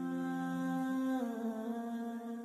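Intro music of sustained hummed voices holding a chord, which steps to new notes a little over a second in.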